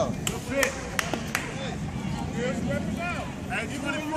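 Background talk from spectators at the ballfield, with four sharp clicks or knocks in the first second and a half.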